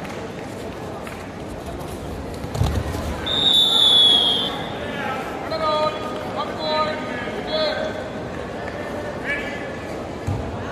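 A dull thud, then one long blast of a referee's whistle lasting about a second, the loudest sound here; players' shouts follow.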